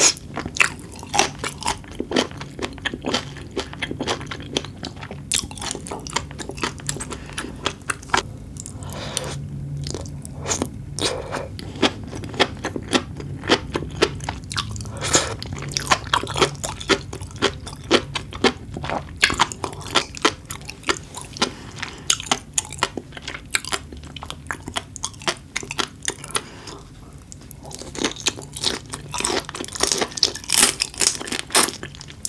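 Close-miked chewing of raw seafood: many crisp pops and crunches with wet mouth sounds, growing denser near the end.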